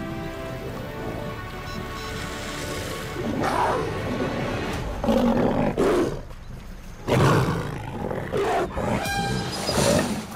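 Lions growling and snarling in a series of rough growls, the loudest about seven seconds in, over background music that fades away in the first seconds.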